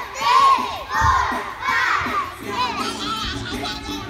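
A group of preschool children shouting and singing together over a backing music track. The voices are loudest in the first half, and the music comes to the fore in the second half.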